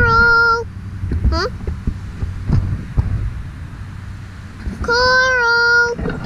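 A girl singing wordless held notes: one long steady note at the start, a short upward-sliding note about a second and a half in, and another long steady note near the end, with a low rumble underneath.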